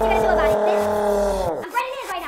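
A man's long, loud shout held on one pitch for about a second and a half, then dropping in pitch and trailing off.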